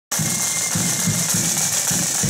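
Marching band snare drums playing a continuous roll over a steady low drum beat about three times a second.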